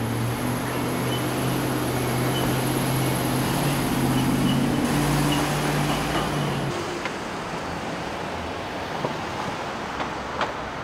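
City street traffic noise with a low, steady vehicle engine hum that rises slightly in pitch about halfway through, then fades out at about two-thirds of the way.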